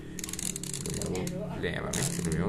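A rapid run of light plastic clicks for about a second near the start, from the plastic pickup roller assembly of an Epson L-series ink-tank printer being handled and turned in the hands. A voice is heard faintly behind it.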